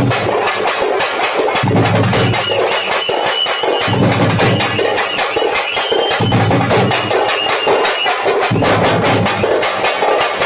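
Loud, fast stick drumming on hand-held drums in a continuous dense beat, with heavier low beats coming round about every second and a half. A thin, high held tone sounds over it through the middle stretch.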